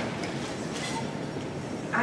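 Handheld microphone being passed from one speaker to the next: a steady rushing hiss with a few faint handling rustles.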